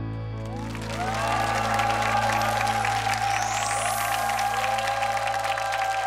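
The backing band holds a long closing chord over a steady bass, and studio-audience applause swells in about a second in, continuing over the chord.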